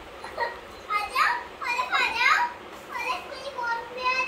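A young child talking in a high voice, in several short phrases.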